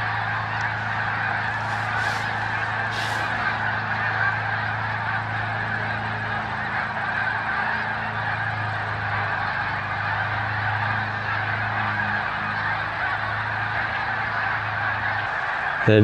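A huge flock of migrating geese flying overhead, thousands of birds honking at once in a dense, continuous chorus. A steady low hum runs underneath and stops about a second before the end.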